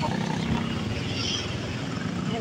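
Motorcycle engine running steadily while riding, heard as a low, even rumble mixed with road and wind noise.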